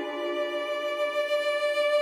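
Solo violin in a baroque style, holding a long sustained note through the whole stretch as a lower note dies away at the start.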